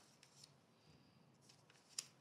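Near silence: faint room tone with a few soft high-pitched ticks, and one sharper click at the very end.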